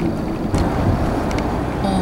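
Steady road noise inside a moving car, the low rumble of tyres and engine, with a few faint ticks.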